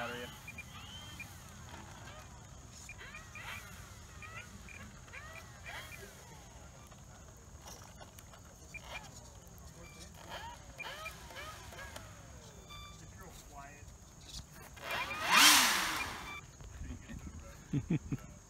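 An RC plane's electric motor and propeller spinning up briefly about fifteen seconds in, a loud rush of air that rises and dies away within about a second and a half. Faint distant voices run underneath.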